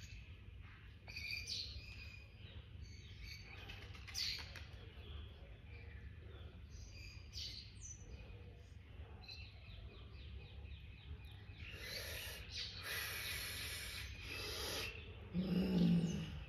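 Garden birds chirping and calling in short scattered notes over a steady low background rumble. Later, a louder rushing noise builds for a few seconds, and a brief low hum, the loudest sound, comes just before the end.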